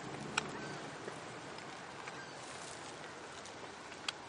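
Steady outdoor background noise, an even hiss, with one sharp click about half a second in.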